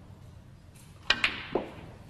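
Snooker shot: a sharp click of the cue tip striking the cue ball about a second in, then a second sharp click of ball hitting ball, followed half a second later by a duller knock.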